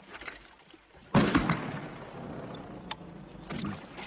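Battle soundtrack of a night river crossing: a sudden loud crash about a second in, with a shout on top, then a lingering haze of noise that slowly dies away.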